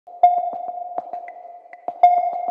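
Electronic intro sound effect for a title card: a steady held tone broken by a string of sharp clicks, the loudest about a quarter-second in.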